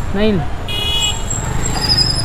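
A short vehicle horn toot a little under a second in, over steady street traffic noise. A thin, high-pitched steady tone comes in during the second half.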